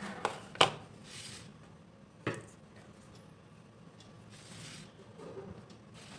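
Light handling of a steel flour bowl and plate on a wooden tabletop as dough balls are dusted in dry flour: two sharp knocks, about half a second and about two seconds in, with soft brushing in between.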